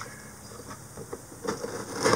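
Faint scraping and a few light knocks of a cardboard box being cut open with a knife.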